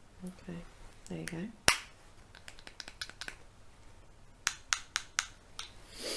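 A voice making two brief sounds, then one loud sharp click about a second and a half in, followed by scattered clicks and a quick run of about five sharp clicks near the end.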